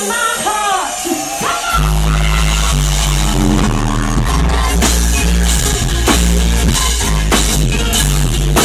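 A live rock band playing on stage, a woman singing over drums, bass guitar and guitar. The bass and drums drop out for the first moment, leaving gliding vocal lines, then the full band comes back in about two seconds in.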